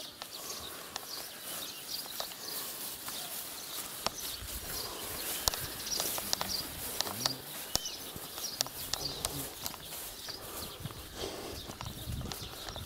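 Footsteps swishing and rustling through tall grass, with birds chirping here and there and faint voices now and then.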